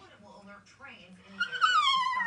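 A small dog's high-pitched whining 'talk', starting about one and a half seconds in and sliding downward in pitch as it carries on.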